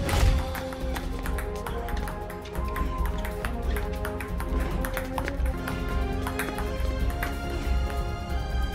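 Dramatic music with a fast run of sharp clicks, several a second, from a ping-pong ball striking paddles and the table during a rally.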